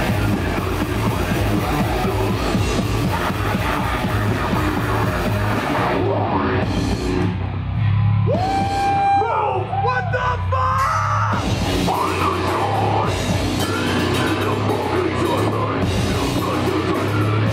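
Live heavy metal band playing loudly through the club PA: distorted guitars, drum kit and vocals. About eight seconds in, the low end drops out for a few seconds, leaving a high sustained note that bends in pitch, and then the full band comes back in.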